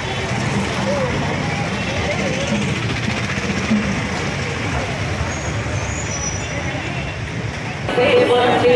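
Busy roadside street noise: traffic running past, with people's voices mixed in, at a steady level.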